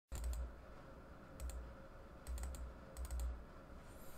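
Computer keyboard keys clicking in four short bursts of a few keystrokes each, with a dull thump under each burst.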